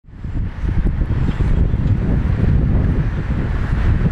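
Street ambience: road traffic noise overlaid with wind buffeting the microphone, a steady low rumble that fades in at the start.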